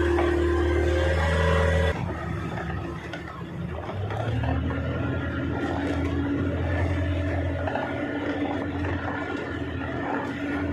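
Fishing boat's engine running steadily, its sound changing abruptly about two seconds in and then settling into a steady lower hum.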